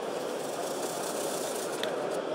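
A hanging roller poster is pulled by its cord and rolls up, giving a rattling hiss from about half a second to two seconds in. Steady hall ambience runs underneath.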